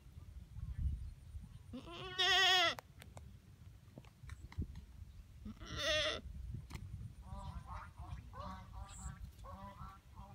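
Goats bleating: a loud, wavering bleat about two seconds in, and a second bleat around six seconds in.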